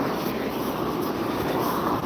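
Steady rush of road traffic passing on a busy street.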